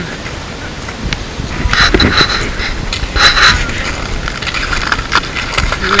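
Wind rumbling on the microphone, with irregular crunching and scraping of boots in snow that gets louder from about two seconds in as the climber comes up to the camera.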